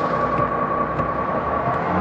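Bus engine running while the bus stands at a stop: a steady rumble with a faint high hum.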